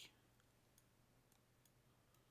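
Near silence: faint room tone with a low hum and a few faint, scattered clicks.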